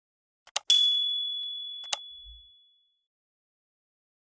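Subscribe-button animation sound effects: a mouse click, then a single bright bell ding that rings and fades out over about two seconds, with another click partway through.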